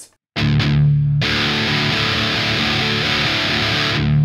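Electric guitar with distortion: one strum of the open strings, then from about a second in fast, continuous strumming of the open strings.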